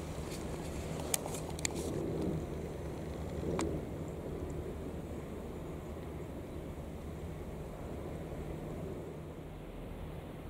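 Steady low engine rumble of a fishing trawler under way, with a few sharp clicks in the first four seconds.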